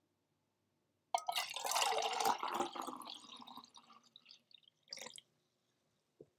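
Homemade mead splashing in a glass jar. It starts suddenly about a second in and is strongest for a couple of seconds before trailing off, with a short second splash about five seconds in.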